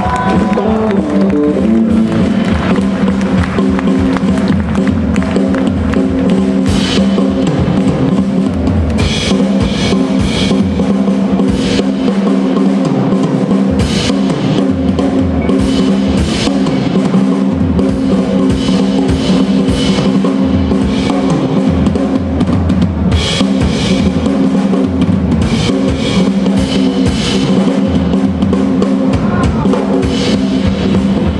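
Blues band playing live, with the drum kit to the fore: kick drum and snare hits over steady held notes from the band.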